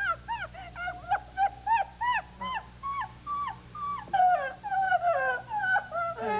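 A woman laughing hard and without stopping, in quick high-pitched bursts of about three to four a second, with a few longer falling notes after about four seconds.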